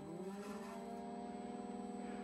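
Newport Vessels 46 lb thrust electric trolling motor, run through an electronic speed control, spinning up in reverse: a steady whine whose pitch rises over about the first second and then holds.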